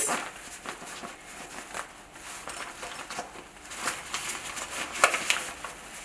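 Rustling and light clicks of equipment being handled: a fabric cuff case and a plastic automatic blood pressure monitor with its tubing being taken out and turned over, a little busier near the end.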